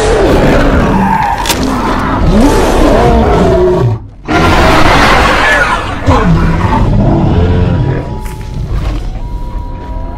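Two large predators fighting: loud roars and growls that slide up and down in pitch over heavy low rumbling, cut off briefly about four seconds in. From about eight seconds in they give way to quieter music with sustained notes.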